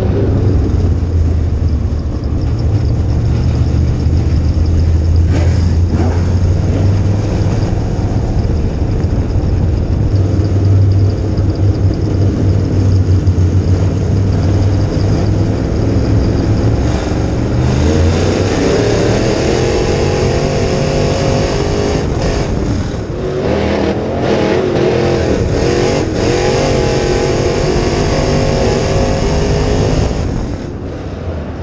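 Crate Late Model dirt race car's V8 engine heard from inside the cockpit at racing speed: a steady low drone for the first half, then revs rising and falling repeatedly from a little past halfway.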